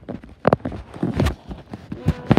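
A few sharp knocks, the loudest about half a second in and another about a second and a quarter in, with lighter taps between.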